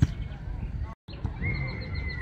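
A sharp thump of a football being kicked, then, after a brief break in the sound, a single long high-pitched note that holds steady and falls away at its end.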